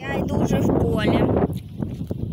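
Wind buffeting the microphone, with a high voice giving short wordless calls: one gliding down just after the start, another rising steeply about a second in.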